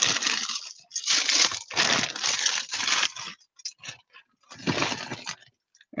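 A clear plastic bag of Lego pieces crinkling in several bursts as it is handled and rummaged through, with short pauses, stopping shortly before the end.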